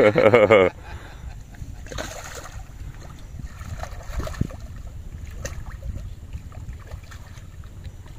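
Steady low wind rumble on the microphone, with faint scattered splashes and ticks from a hooked silver carp being played at the surface.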